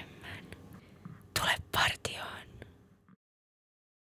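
A voice whispering a few breathy words over faint background hiss, then the sound cuts off to silence about three seconds in.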